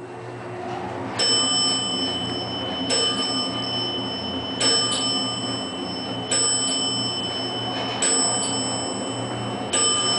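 Elevator floor-passing chime ringing once as the car passes each landing, six chimes about 1.7 seconds apart as it descends. Under them runs the low steady hum of the moving car.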